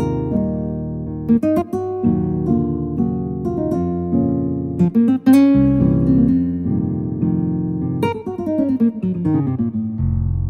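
Yamaha Montage 7 synthesizer played with a sampled acoustic guitar patch: plucked chords and single notes, with a quick run of notes falling in pitch over the last two seconds.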